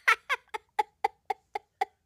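A child laughing in a long run of short, high-pitched bursts, about four a second.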